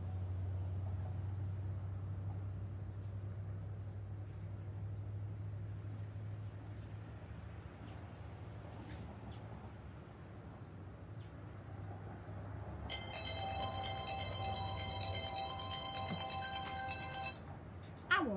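Phone ringtone: an electronic melody of steady tones that starts about thirteen seconds in and cuts off after about four seconds, an incoming call that goes unanswered. A low steady hum underlies the first half.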